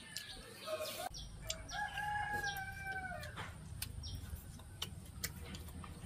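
A rooster crowing once, a single long call of about two seconds starting about a second and a half in, followed by a few sharp clicks.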